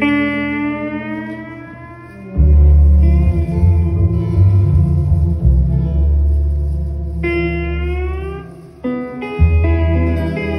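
Live instrumental band music: long sustained lead notes that glide slowly upward in pitch, at the start and again about seven seconds in, with electric guitar and a heavy low bass and drum part coming in about two seconds in.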